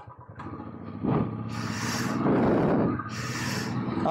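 Royal Enfield Classic 350's air-cooled single-cylinder engine pulling away from a stop, getting louder about a second in as it accelerates. Two gusts of wind noise hit the microphone in the second half.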